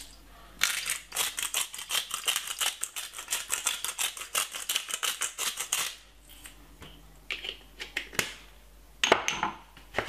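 A spice jar of dried garlic-and-tomato seasoning shaken out over the chicken, the granules rattling in a fast, even run of ticks for about five seconds, followed by a few scattered clicks.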